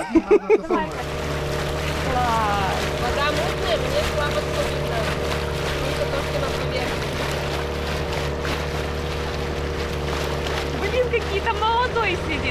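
Boat engine running steadily under way, a constant droning hum that sets in about a second in.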